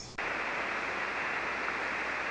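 Steady static hiss from an HF ham radio receiver on 40-metre single sideband (7.188 MHz), coming up just after the start as the station switches from transmitting to receiving. The hiss is dull, with no high end, as heard through a narrow SSB passband.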